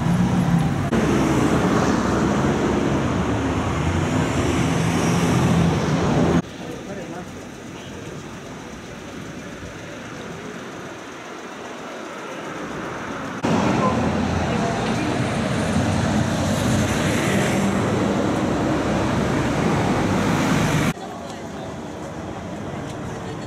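City street ambience: road traffic with people talking nearby. It is louder in the first third and again near the end, with a quieter stretch in the middle, and the level jumps suddenly between them.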